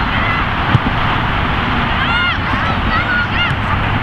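A steady rush of wind and road-traffic noise, with a single sharp thud under a second in and high-pitched shouts from players or onlookers about halfway through and again shortly after.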